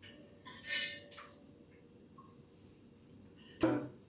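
A metal spoon clinking and scraping against a small stainless steel bowl a few times, with one sharp ringing clink near the end.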